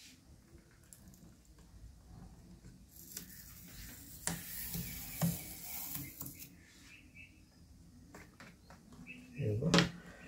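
A rubber foot strip is pried and peeled off the plastic underside of an HP 15 laptop with a plastic pry tool. There are about three seconds of scraping and rubbing with a few sharp clicks as it lifts away, then scattered small taps.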